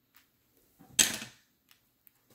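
A single sharp click of a small crystal stone set down hard about a second in, as it is lifted off a tarot card, with a few faint handling ticks around it.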